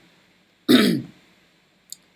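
A man clearing his throat once, a short loud burst about a second in.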